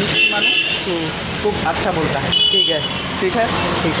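A man talking over street traffic, with two short vehicle horn toots: one at the very start and one about two and a half seconds in.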